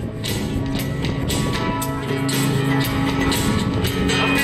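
Acoustic guitar strummed in a steady rhythm, chords ringing on between the strokes, in an instrumental passage of a live song.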